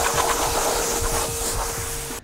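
Electric pressure washer spraying a jet of water onto a car's rear hatch: a steady hiss of spray with a steady hum underneath.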